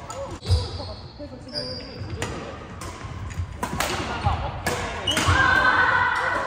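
Badminton rackets striking a shuttlecock in a doubles rally: sharp clicks several times, with feet thudding on the sports-hall floor and shoe soles squeaking, echoing in a large hall.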